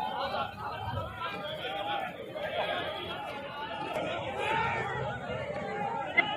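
Several men shouting and calling out over one another, a babble of raised overlapping voices.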